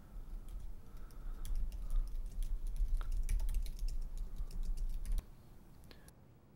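Typing on a computer keyboard: a quick, irregular run of keystrokes that stops abruptly about five seconds in.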